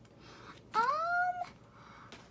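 A single short call, rising in pitch and then levelling off, lasting about two-thirds of a second, just before the middle.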